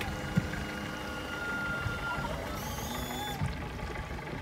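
Steady low rumble of a motorboat's outboard engine with water and wind noise. A knock comes about half a second in, and a brief high-pitched whine sounds near the end.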